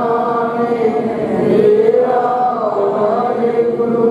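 A Sikh congregation chanting together in unison, in long held notes that glide slowly up and down at a steady level.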